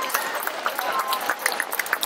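Wedding guests applauding: a dense, irregular patter of hand claps, with scattered voices among them.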